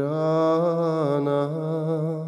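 A man's voice singing a sevdalinka, one long held note with a slight wavering vibrato that begins abruptly at the start.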